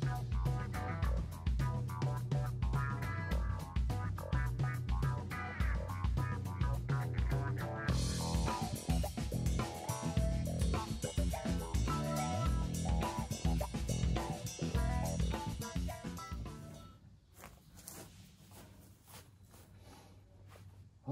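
Background music with a steady beat, played on guitar, bass and drums, fading out near the end.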